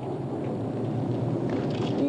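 Steady storm noise: rain falling with a low rumble underneath.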